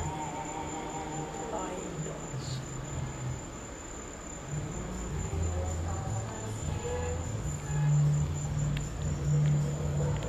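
Crickets trilling steadily in one unbroken high note, over background music with held low bass notes.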